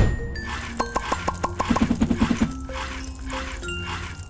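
Short jingle for an animated show logo: music opening with a low hit, then a quick run of short repeated notes and a few held tones.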